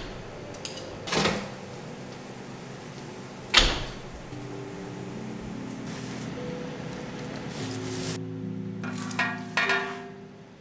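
Kitchen handling sounds: a knock about a second in and a sharper one about three and a half seconds in, then soft background music comes in. Near the end come a few ringing clinks of metal tongs against a stainless steel pot.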